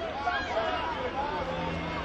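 Several high-pitched voices calling out and shouting over one another, with a murmur of crowd chatter.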